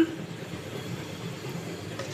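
Oil sizzling steadily in a frying pan with strips of food frying in it.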